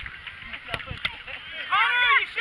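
Two sharp knocks of a soccer ball being kicked, about a second in, over outdoor field noise, then loud high-pitched shouting voices near the end.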